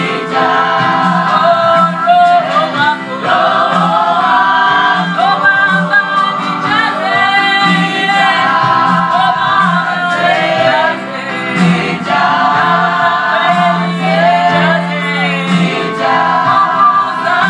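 Gospel song: several voices singing together over a held low accompanying note.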